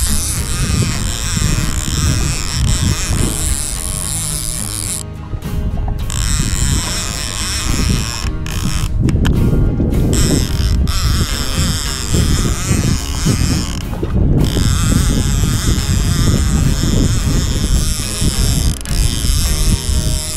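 Background music over a conventional fishing reel being cranked, winding line in against a hooked fish.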